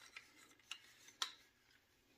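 A few faint clicks and taps of hard plastic toy vehicles being handled, otherwise near silence.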